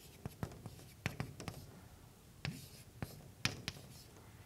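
Chalk writing on a blackboard: a string of irregular sharp taps and short scrapes as the chalk strikes and drags across the board, about eight strokes in all.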